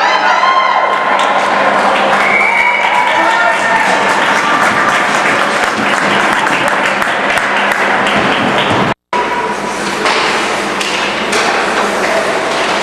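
Ice hockey rink crowd noise: spectators shouting and calling out in a large echoing hall, over frequent clacks and thuds of sticks, puck and boards. The sound cuts out for a moment about three-quarters of the way through.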